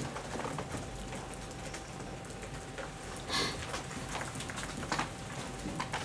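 Low room noise of a quiet press room with a faint steady hum, broken by a few soft brief rustles or clicks, one a little past the middle and another near the end.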